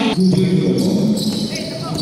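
Basketball being dribbled on the court during a game, with players' and spectators' voices echoing in the gym.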